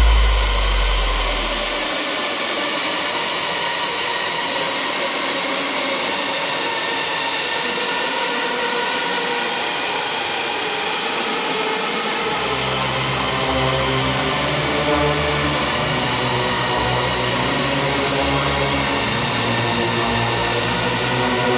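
Hardcore electronic music in a drumless breakdown: a sustained, droning synth pad with a hissy noise wash that sounds like a jet engine. A deep bass note fades out in the first two seconds, and low held bass notes come back in about twelve seconds in.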